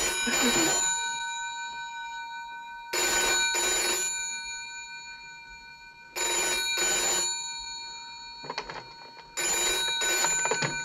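Bedside rotary telephone bell ringing in the British double-ring pattern: four pairs of rings about three seconds apart, each ring leaving a short lingering bell tone.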